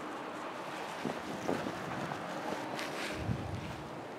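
Wind buffeting the microphone: a steady rush with a low rumbling gust near the end. A few brief scuffing noises come about a second in.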